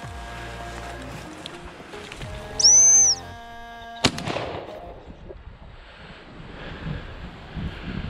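Background music, then a loud high whistle note near the three-second mark, then a single shotgun shot about four seconds in.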